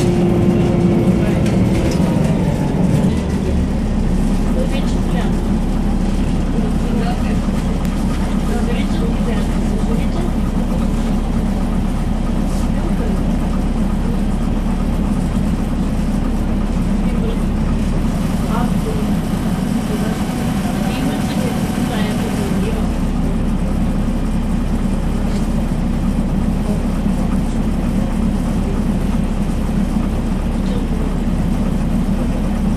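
Cabin sound of a MAN NL202 city bus under way: steady diesel engine drone and road noise, with the engine note dropping about three seconds in. A hiss rises for a few seconds past the middle.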